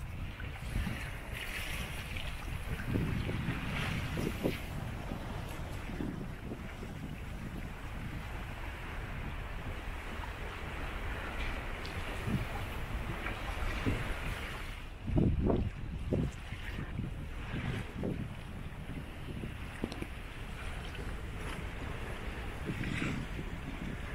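Wind buffeting the microphone over the rush of the sea past a sailboat running downwind in a freshening breeze. There are a few harder gusts, the strongest about fifteen seconds in.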